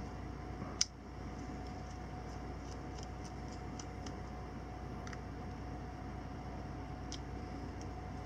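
Small precision Phillips screwdriver turning out the tiny screws of an action camera's lens cover: one sharp click about a second in and a few faint ticks after it, over a steady low background hum.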